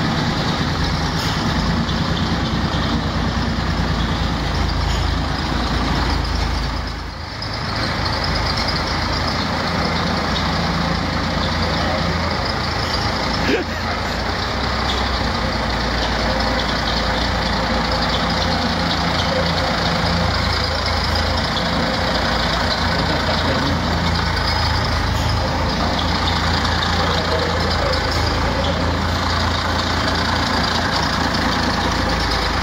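MCW Metrorider minibus's diesel engine running steadily as the bus is driven slowly across the shed. The sound dips briefly about seven seconds in.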